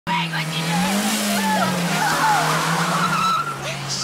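Car engine running hard with tyres squealing as the car speeds off; the engine note sinks slowly.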